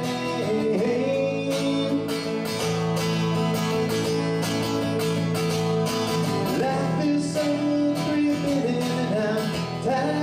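Acoustic guitar strummed in a steady rhythm under a violin playing long held notes with slides between them.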